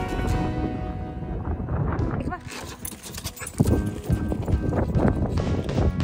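Background music for about two seconds, then a dog whining in a rising glide, followed by a jumble of quick scuffles, knocks and short yips from dogs excitedly getting out and running about.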